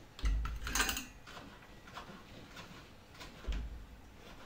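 Small clicks and knocks of a soldering iron being lifted from its stand and worked at a table, with a dull thump soon after the start and another near the end.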